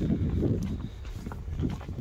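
Footsteps on the bridge's wooden deck boards, a string of irregular hollow knocks over a low rumble.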